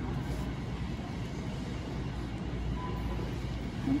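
Steady low rumble of a large store's background noise, with a brief faint tone about three seconds in.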